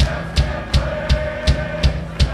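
Live rock band playing, the drum kit keeping a steady beat of about three strokes a second under a held note.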